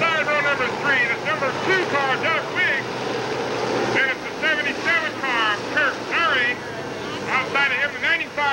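Dirt late model race cars running around the track in a steady engine drone. Over it, an announcer's voice comes from the track loudspeakers in short phrases with pauses, too unclear to make out words.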